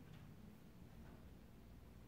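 Near silence: room tone with a steady low hum and a couple of faint ticks.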